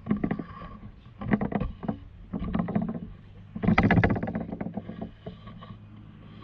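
Water splashing and sloshing close to the microphone, mixed with knocks, in four bouts about a second apart, loudest near four seconds in, as a beaver moves through shallow water right beside the camera.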